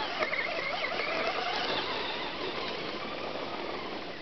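Traxxas Slash RC truck's stock 12-turn electric motor whining, its pitch wavering with the throttle and fading as the truck drives away.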